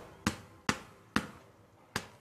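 Steady rhythmic tapping, a hand knocking on a hard surface about twice a second: the repetitive movement of a person with late-stage dementia.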